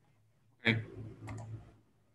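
A man's voice over a video call saying "okay", with sharp clicks at its start and partway through.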